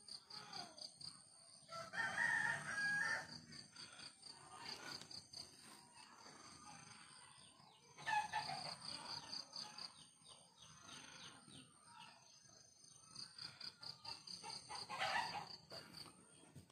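A rooster crowing three times, each crow about a second long and several seconds apart, over a faint steady high-pitched pulsing.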